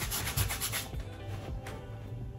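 Paintbrush scrubbing paint onto a canvas in quick back-and-forth strokes, stopping about a second in, over faint background music.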